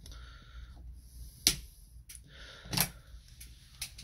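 Sharp clicks from a hand working a small 12-volt switch and outlet panel, two of them loud and about a second apart, with a few fainter ones, over a faint low hum.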